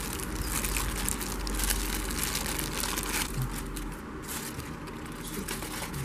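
Plastic wrapping crinkling and rustling as an electric pencil sharpener is unwrapped by hand, busiest for the first four seconds and then thinning out.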